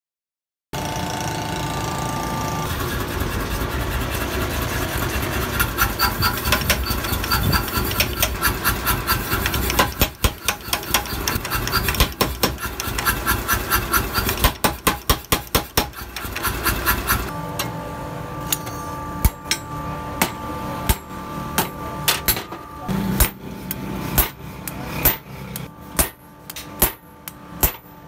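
Mechanical power hammer pounding a red-hot steel knife blank with rapid blows, several a second. About 17 seconds in, this gives way to slower single hammer blows, roughly one a second, on a handled forging tool held against the anvil.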